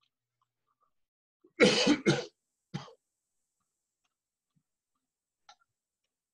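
A person coughing over the call audio: two quick, loud coughs about a second and a half in, then a shorter, fainter one a moment later.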